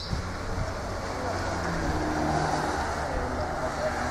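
Steady sound of road traffic, cars passing by on the road.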